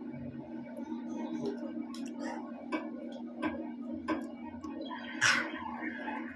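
A child chewing a fried chicken nugget close to the microphone: irregular small clicks and crunches of chewing, with a louder crunch about five seconds in, over a steady low hum.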